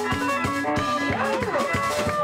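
Tsapiky band playing live: electric guitars and electric bass over a fast, steady drum beat.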